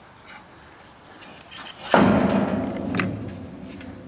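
A sudden loud knock as a brown bear's branch strikes the enclosure's metal fence, ringing and rattling for about a second and a half, with a second sharper knock about a second later.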